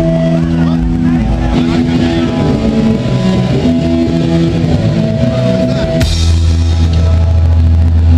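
Live rock band playing on stage: electric guitar notes held and ringing, then about six seconds in a loud, deep bass comes in under them.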